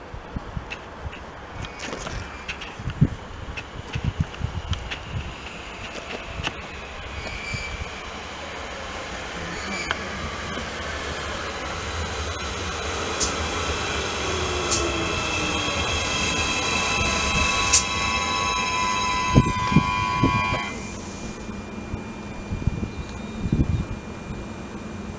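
TrainOSE Siemens Desiro electric multiple unit arriving and braking to a stop: its motor whine slides down in pitch as it slows, and a high-pitched brake squeal grows louder. The squeal cuts off suddenly a few seconds before the end as the train halts, leaving a steady hum from the standing unit.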